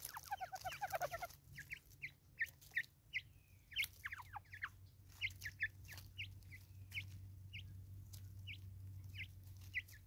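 Natal spurfowls feeding at a seed-covered wooden stump: a rapid run of low clucking notes in the first second or so, then sharp pecking taps and short, high, falling chirps about every half second.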